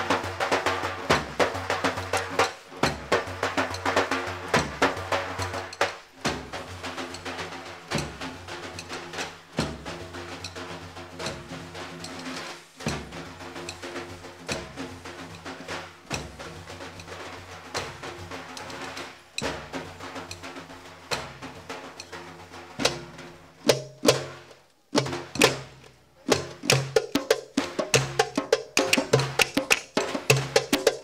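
Iranian folk percussion: large frame drums (daf) and other drums beaten in a fast, driving rhythm. It stops briefly about 25 seconds in, then the sharp strikes resume.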